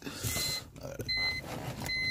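BMW 325Ci dashboard warning chime beeping repeatedly, short high beeps a little faster than once a second, with some rustling in the cabin near the start.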